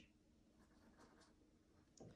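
Near silence, with a few faint, brief scratches of a small paintbrush working watercolour paint.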